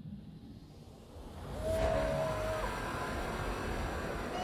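Škoda Octavia RS 245 estate driving fast: rushing wind and road noise swell up sharply about a second and a half in and then hold steady. A short steady tone sounds over the rush for about a second.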